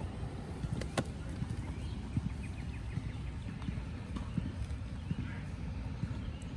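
Spoon and fingers working a dollop of puffy paint on paper on a wooden table: scattered soft taps and knocks, with one sharp click about a second in, over a low steady rumble.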